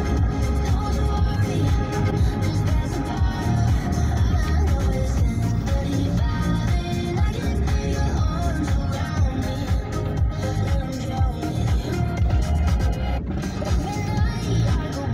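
Music playing on the car radio, heard inside the moving car's cabin, with a steady bass-heavy beat.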